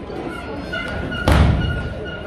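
One heavy thud about a second and a half in: a wrestler's body hitting the ring canvas, with the boards underneath booming briefly.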